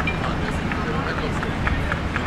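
Outdoor harbour ambience: a steady low rumble with people talking.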